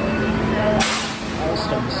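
Washington Metro Alstom 8000-series railcar at the platform: a steady hum, then a short, sharp hiss of air about a second in.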